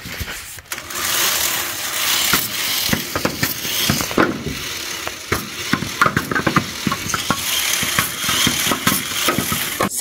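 VEX robot flywheel, driven by two blue motors through two flex wheels, spinning up and launching triballs: a dense mechanical whirr starting about a second in, broken by many quick knocks as the plastic balls are fed, hit and land.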